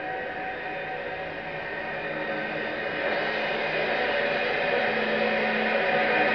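Live rock band playing an instrumental passage: a thick sustained chord of held notes that swells steadily louder.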